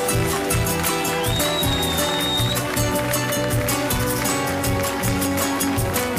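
Instrumental break in a live song: the band plays on with a steady beat while hands clap along in rhythm.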